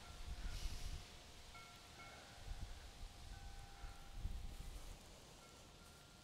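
Faint wind chimes ringing, several clear sustained tones overlapping and fading in and out, over a low rumble of wind on the microphone.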